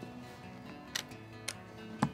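Quiet background music with steady held notes, and two sharp clicks of game pieces being handled, about a second in and half a second apart.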